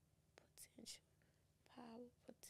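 Very faint whispered speech from a woman muttering under her breath, a few soft hissy sounds and a short murmur near the end, otherwise near silence.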